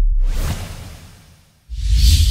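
Logo-sting whoosh sound effect over a deep bass rumble that fades away, then a second whoosh with a bass hit swelling in near the end.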